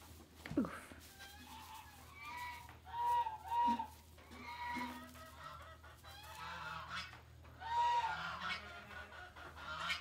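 Short, high-pitched farm-animal calls, several in quick succession a few seconds in and more near the end, with a brief falling squeak about half a second in.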